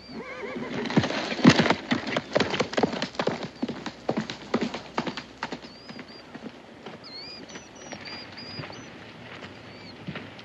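Hooves of horses at a fast gait clattering as the riders move off, a quick run of hoofbeats that fades away over about six seconds.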